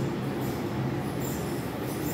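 Small 9 V DC submersible water pump running steadily, an even low hum, while it pumps the cold water.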